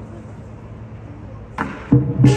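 Crowd murmur, then about one and a half seconds in a loud crash of lion dance percussion, a cymbal clash that rings on, with the big drum coming in just at the end.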